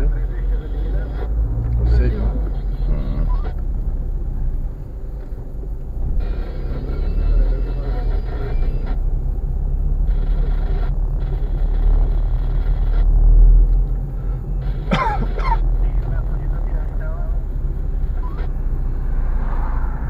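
Steady low rumble of a car's engine and tyres heard inside the cabin while driving slowly in traffic, with people in the car talking now and then.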